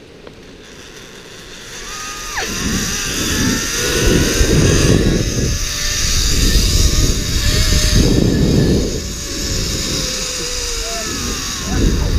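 Zip line trolley pulleys running along the steel cable with a whine, and wind rushing over the microphone as the rider picks up speed. It builds over the first few seconds, is loudest in the middle and eases off near the end.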